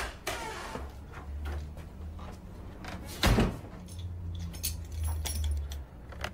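A hotel room door being worked: latch clicks at the start, then a heavy thump about three seconds in as it shuts, with small clicks after it, over a low steady hum.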